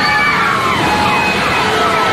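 Several wailing sirens overlapping, their pitches sweeping downward again and again, over a steady rush of flood water pouring down the stairs of the ride's subway-station set.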